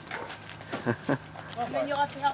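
Voices talking, with a few light clicks in the first second and a low steady hum underneath.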